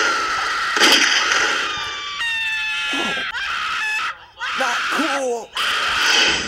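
A person screaming: a high, wavering scream held for about a second and a half in the middle, then shorter cries. A sharp, loud burst of noise comes just under a second in.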